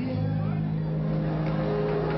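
Live calypso band music with long held notes, as on a sustained chord.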